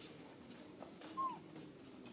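A single short, high-pitched call from a young macaque, rising then falling in pitch, a little over a second in.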